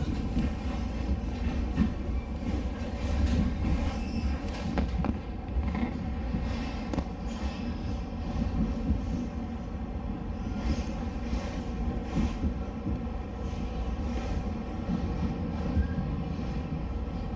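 Steady low rumble of a moving electric train heard from inside the carriage, wheels running on the rails with a few faint clicks.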